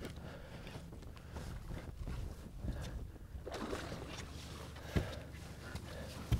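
Quiet sounds of a small boat on a lake: a steady low rumble with faint washes of water noise, and one short sharp knock about five seconds in.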